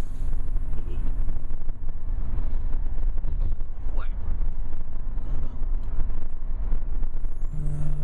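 Road and engine rumble inside the cabin of a moving car, heavy and low, with one short rising squeal about halfway through.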